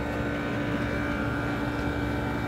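Steady machinery hum: a constant low drone with a few fixed whining tones, holding an even level throughout.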